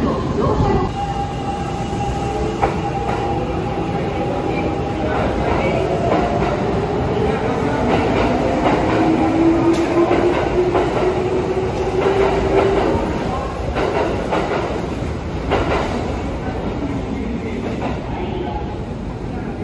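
Kintetsu electric train running into an underground station platform: a steady rumble with wheels clattering over the rails, echoing off the platform walls. A whining tone rises slightly in pitch from about eight seconds in and stops at about thirteen seconds.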